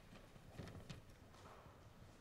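Near silence: faint room tone with a few soft knocks, about half a second and a second in, from things being handled at a lectern.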